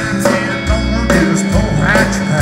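Live country band playing a song: acoustic guitar, electric guitar, bass and drums together.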